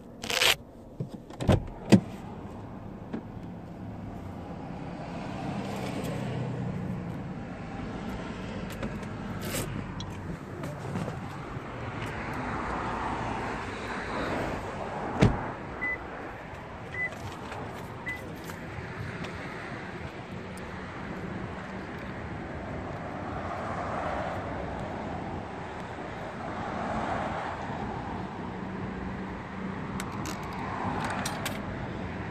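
Cars passing on a city street, their tyre and engine noise swelling and fading several times. Near the start come sharp knocks as of a car door being opened and shut. About fifteen seconds in there is one loud click, followed by three short high beeps about a second apart.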